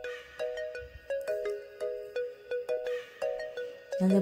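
A simple electronic tune of clear, ringing single notes, about two to three a second, each struck and then fading.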